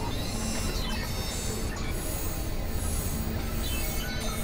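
Experimental electronic noise music: a dense, steady wall of noise and drone with many high, squealing sustained tones and a few faint pitch glides.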